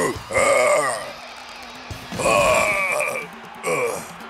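A cartoon male voice giving wordless effort sounds as worn-out footballers collapse: three groans and grunts, the longest about two seconds in, over background music.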